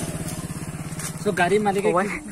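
Honda Shine SP 125's single-cylinder four-stroke engine idling steadily with an even, rapid pulse; a man's voice comes in over it near the end.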